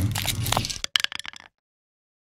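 Animated logo sound effect: a crackling whoosh with a low rumble, breaking into a quick flurry of sharp clicks about a second in and cutting off abruptly at about a second and a half.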